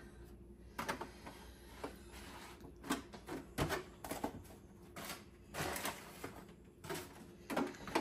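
Faint pouring of milk into a steel pot at the start, then irregular light knocks and clicks as plastic gallon milk jugs are handled.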